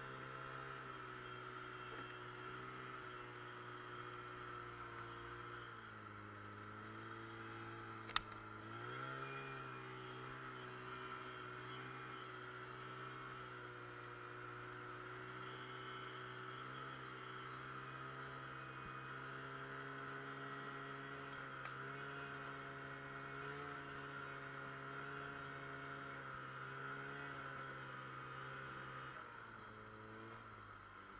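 Snowmobile engine running at a steady, even pitch. The pitch drops about six seconds in and picks back up a little after eight seconds, with a single sharp click around eight seconds; near the end the engine note falls away.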